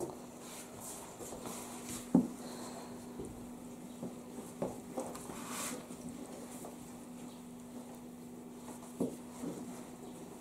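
Wooden paddle stirring thick bread batter in a large aluminium pot, with a few knocks of the paddle against the pot, the loudest about two seconds in, over a steady low hum.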